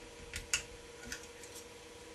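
A few faint, sparse clicks of the threading hook and yarn against the flyer of a Saxony spinning wheel as the yarn is threaded through it; the sharpest click comes about half a second in.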